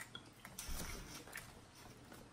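Faint table sounds of eating by hand: a few small clicks and rustles as a shrimp's shell is handled and peeled.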